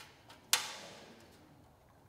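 A sharp metallic clink about half a second in that rings on and dies away over about a second, with a faint tick just before it: metal on metal as the O2 sensor is threaded by hand into the exhaust pipe.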